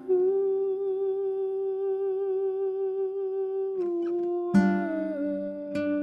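A man hums one long, slightly wavering note for nearly four seconds, then nylon-string classical guitar notes are plucked under it near the end as the humming steps down to a lower note.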